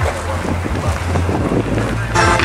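Wind noise on the microphone, with the steady low bass notes of distant music underneath.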